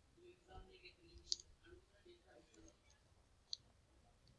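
Near silence with two faint, sharp clicks of a computer mouse button, one about a second in and one near the end, as a slide is advanced; a faint murmur sits underneath in the first part.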